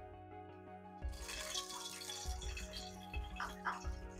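Oil poured from a small bowl into an aluminium pressure cooker: a brief, faint splashing hiss about a second in, lasting about a second.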